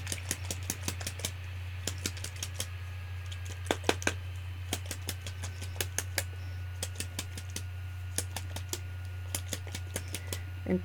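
Shimmer spray bottles being pounded on the tabletop in rapid, irregular knocks, several a second, to break loose the sparkly settled shimmer in the bottom so it mixes in. A steady low hum runs underneath.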